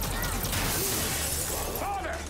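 Din of a busy arcade: a dense, steady wash of crowd chatter and game noise with a hiss that swells in the middle.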